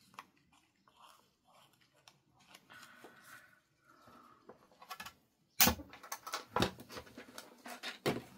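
Quiet handling of paper and craft tools on a cutting mat. A little past halfway comes a sharp knock, then a run of smaller taps and clicks against the work surface.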